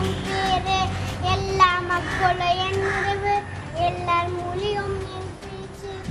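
A young boy's voice over background music with a long, held melody line.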